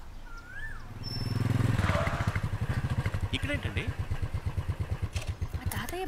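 Motorcycle engine coming in, loudest about two seconds in, then idling with an even, fast thumping pulse of about ten beats a second.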